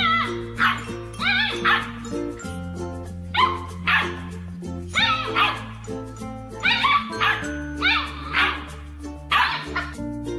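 Husky-type puppies barking and yipping in play, a string of short high barks about one or two a second, over background music with steady held notes.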